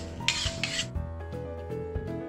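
A spatula scraping across a wok while a thick herb paste is stirred, one scrape about a quarter second in. Soft background music plays.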